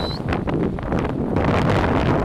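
Wind buffeting the microphone of a camera carried on a moving bicycle, a loud, uneven rush heaviest in the low end. A brief thin high squeal sounds right at the start.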